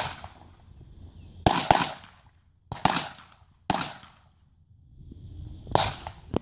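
Handgun shots fired in a target-transition drill, each with a short echo. One shot comes at the start, then a quick pair about a second and a half in. Single shots follow at about three and four seconds in and again near the end.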